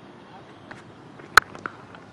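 A single sharp crack of a cricket bat striking the ball about a second and a half in, a very powerfully struck shot that goes for six, over a low steady ground ambience.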